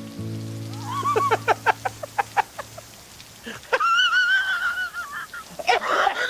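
A man bursting into laughter: a quick run of 'ha' bursts, then a long high-pitched squeal of laughter he is trying to hold in. Under it, a soft sustained music chord fades out in the first couple of seconds.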